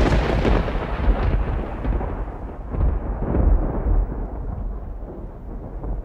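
A long low rumble that swells and ebbs, with a hissy, crackling upper part that fades away over the seconds.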